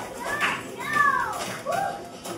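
A child's voice making three high sliding vocal sounds, each rising then falling in pitch, the middle one the longest and loudest.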